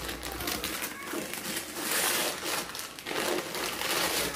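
Gift-wrapping paper being torn and crinkled as a present is unwrapped, with the loudest rip about halfway through.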